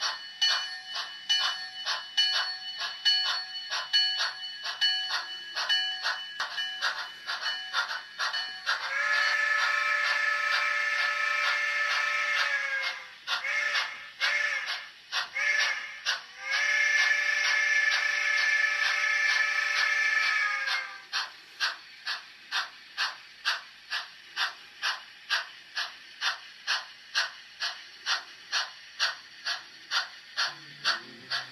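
Sound of a small steam locomotive on a model railroad: steady exhaust chuffs with a bell ringing along for the first several seconds, then a long chime-whistle blast, a few short toots, and a second long blast. After the whistle the chuffing carries on alone, quieter, at about three beats a second.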